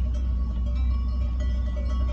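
Many cowbells on a passing herd of cows clanking and ringing irregularly, at several different pitches, over the steady low rumble of the car's engine.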